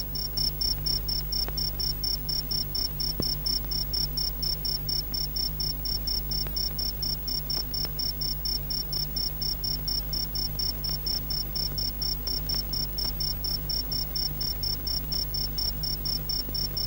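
Cricket chirping steadily: a high, evenly spaced pulse several times a second, over a low steady hum.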